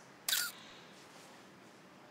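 Smartphone camera shutter sound, one short click as a selfie is taken.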